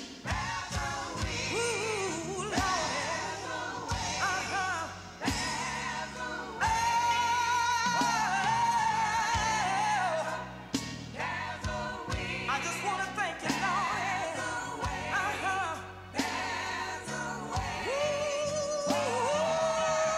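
Gospel song played from a cassette: a woman sings lead with vibrato over a steady bass and band. She holds a long note a little before the middle and starts another near the end.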